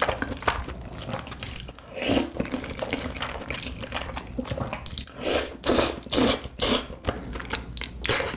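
Close-miked wet eating sounds: chewing and smacking with many small clicks, and five louder bursts, one about two seconds in and four in quick succession in the second half.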